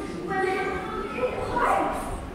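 A girl's voice reciting dramatically, with one drawn-out high-pitched cry and a louder rising cry near the end.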